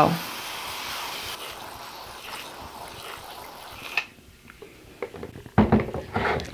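Hand-pump pressure sprayer misting water onto freshly sown seed-tray soil: a steady spray hiss that grows fainter and stops about four seconds in. A few light handling clicks and a knock follow near the end.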